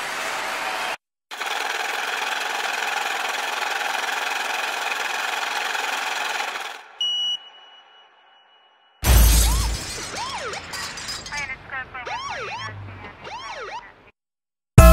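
Sound-effect samples auditioned one after another. First comes about five seconds of crowd noise, then a brief high beep. Then a car-crash sample sounds: a loud crash about nine seconds in, followed by short wailing siren sweeps.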